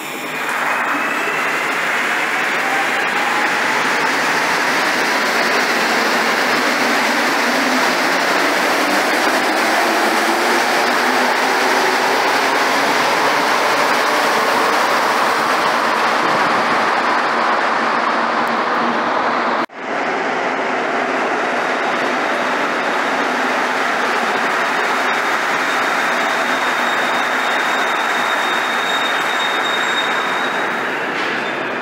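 Rubber-tyred Montreal metro trains in a station. First an Azur train pulls out with a rising whine over its running noise. After an abrupt break, another train runs into the station, with a steady high tone over the last few seconds.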